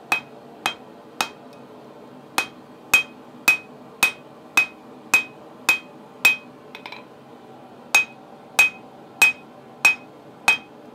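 Hand hammer striking hot steel on a small anvil, about fifteen sharp blows at roughly two a second, each with a short metallic ring. There is a brief pause after the third blow and another around seven seconds in, with a light clatter.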